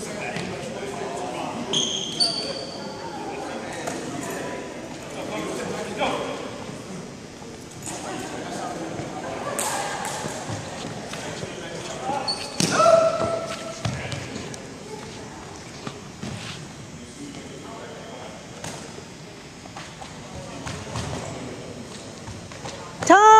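Running footsteps and sneaker squeaks on a hardwood gym floor, with scattered thuds and short high squeaks, echoing in a large hall.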